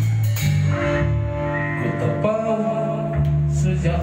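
Electric guitar played through an amplifier, holding sustained notes and chords of a rock ballad, with a man singing over it.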